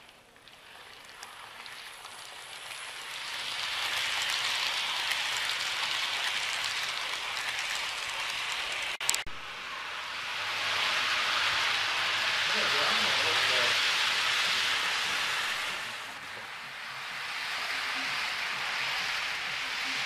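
Model trains running on the layout's track: a steady rolling hiss of small metal wheels on the rails, swelling and fading as trains pass close by. A single sharp knock about nine seconds in.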